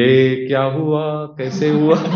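A man singing a line of a Hindi film song into a microphone, holding long steady notes.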